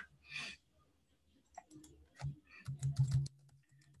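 Scattered clicks of a computer keyboard and mouse, about a dozen in quick succession in the middle, after a short breathy puff at the start.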